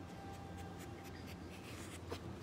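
Faint scratching and light clicks of a southern tamandua's claws on the bark of a log as it climbs, over a low steady background hum.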